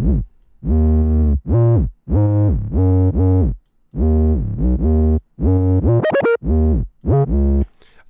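A melodic 808 bass line playing through a parametric EQ: separate deep synth bass notes, many sliding up or down in pitch, with a quick high slide about three-quarters of the way through. The EQ takes away some of the deepest bass and slightly boosts the low mids, so the 808 stays audible on a phone or laptop speakers.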